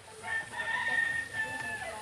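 A rooster crowing once, one long call held for about a second and a half.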